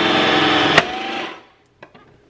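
Toastmaster electric bagel slicer running, its motor-driven spinning blade giving a steady whine while a bagel is pushed through and sliced. A sharp click comes a little under a second in, then the motor winds down and stops, with a few small plastic clicks near the end.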